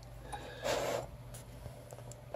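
A short, breathy puff of air, like a sniff or exhale, with a few faint clicks over a low steady hum.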